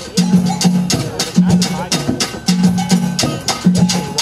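A steel drum band with hand drums and tambourines playing an upbeat Caribbean-Latin tune. Low pan notes repeat in a steady groove under dense tambourine jingles and djembe strokes.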